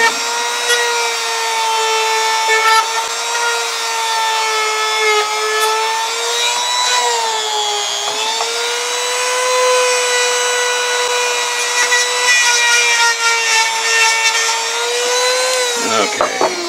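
Handheld rotary tool running at high speed, a steady whine, polishing a motor shaft bushing mounted on its mandrel. The pitch dips briefly about halfway through, and the tool winds down right at the end.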